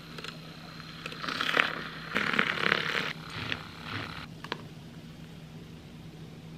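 Handheld battery milk frother whisking milk in a ceramic mug: a hissing, frothy whir, loudest from about one to three seconds in, followed by a couple of light ticks.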